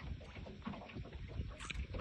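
Faint low rumble with small irregular knocks from a small metal boat on a river: water against the hull and wind on the microphone.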